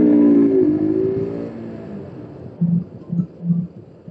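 KTM RC 200's single-cylinder engine winding down in pitch as the bike is braked hard on the front brake. The note fades to a low rumble within about two seconds, and a few short low hums follow.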